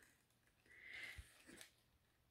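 Near silence, with a faint, brief rustle of handling about halfway through.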